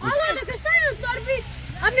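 Speech: a child's high-pitched voice talking, with a faint low steady hum underneath.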